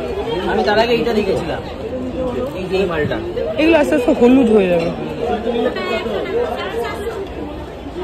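Indistinct chatter of several voices talking at once, louder around four seconds in.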